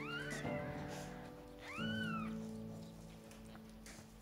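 Cat meowing: two short mews that rise and fall in pitch, one right at the start and one about two seconds in, over soft background music with held chords.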